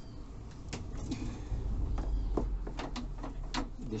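Hands working an electrical wire along a metal wheel-well housing and wood panelling: a scatter of irregular light knocks and clicks with scraping, and a low rumble in the middle.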